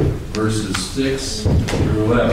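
A voice speaking aloud, with a few sharp clicks among the words.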